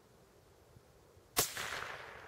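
A single Blaser rifle shot about a second and a half in, sharp and loud, with its echo dying away after it.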